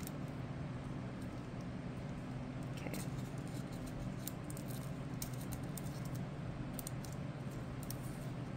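Small metal scissors snipping and handling a sheet of thin nail transfer foil: a scatter of light clicks and crinkles, most of them in the second half. A steady low hum runs underneath.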